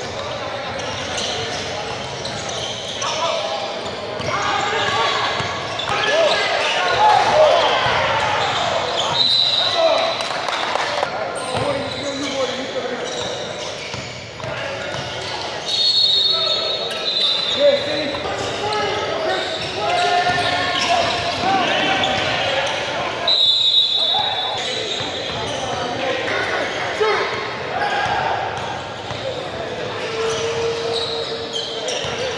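Basketball game in a gym: a ball bouncing on the hardwood court, with players' and spectators' voices echoing through the large hall. A few short high-pitched squeaks cut through, about a third of the way in, around the middle, and again about three quarters in.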